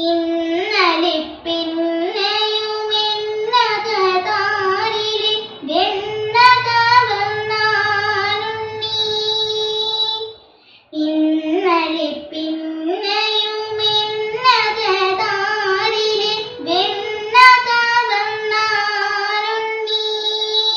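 A young girl singing solo in Carnatic style, a Malayalam devotional song to Krishna, her voice sliding and ornamenting its notes. A short break about ten seconds in, then the same phrase is sung again.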